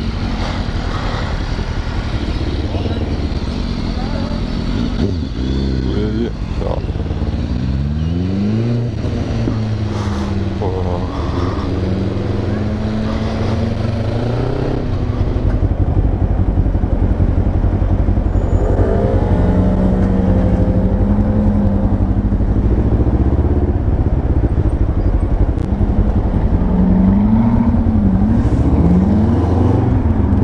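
Motorcycle engine heard from the bike while riding through city traffic, likely a Kawasaki ER-5 parallel twin, revving up and down between gears several times, with a run of rising revs about seven seconds in and again near the end. Road and wind noise run underneath, and the sound gets louder about halfway.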